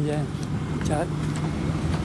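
Steady low rumble of road traffic, with a man's voice briefly at the start and about a second in.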